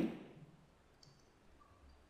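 Near silence: faint room tone after a voice trails off, with a faint short click about a second in.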